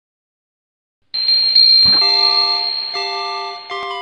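Silence for about a second, then small bells start ringing: a bright high strike, a dull thump just after, then several held bell tones, with quicker changing chime notes starting near the end.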